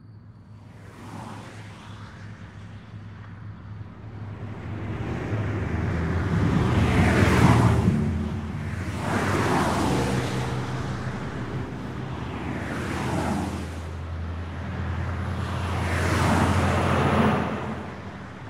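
Cars passing one after another on a highway, each a whoosh of tyre and engine noise that swells and fades, over a steady low traffic rumble. The loudest pass comes about seven seconds in.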